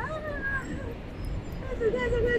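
A frightened woman's drawn-out cry of "ah", falling in pitch over about half a second, with the first words of hurried speech coming in near the end.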